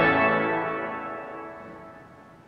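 A full chord on the Smith and Gilbert pipe organ is released, and its sound dies away in the church's reverberation over about two seconds, the high notes fading first.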